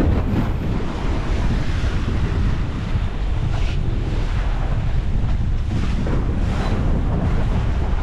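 Strong wind buffeting the microphone over rough seas, with waves washing and splashing against a boat's hull.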